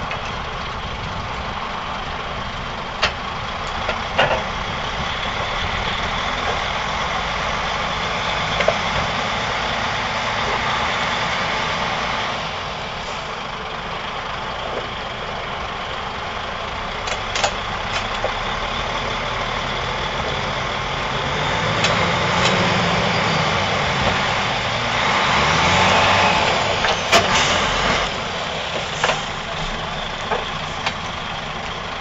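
A diesel engine running steadily, working harder for a few seconds about three-quarters of the way through, with sharp metallic clanks now and then as the Class 312 driving trailer coach is moved off the low-loader onto the rails.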